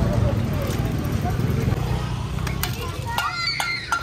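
Street ambience: people talking nearby over a steady low rumble of traffic, with a few sharp clicks and higher voices near the end.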